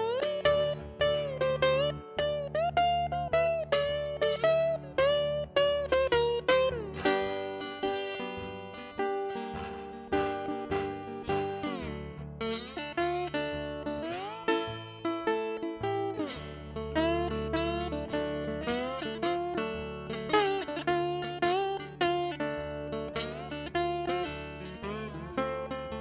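Solo acoustic blues guitar played fingerstyle in an instrumental break: a low bass line under a plucked melody whose notes often slide up and down in pitch.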